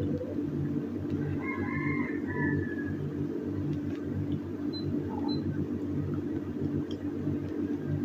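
A low, steady hum with a faint pulsing beat, and a few faint short chirps between about one and a half and two and a half seconds in.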